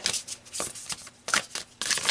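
A deck of oracle cards being shuffled by hand: a string of quick, irregular papery flicks and clicks that thickens into a denser run near the end.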